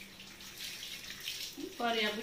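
Water running from a low wall tap onto a tiled floor as produce is rinsed under it, a faint, steady splashing hiss. A woman's voice comes in near the end.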